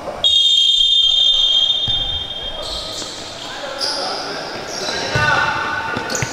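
Referee's whistle blown in one long blast of about two seconds, signalling the kick-off. Then shoes squeaking on the court and a few sharp knocks of the ball being played.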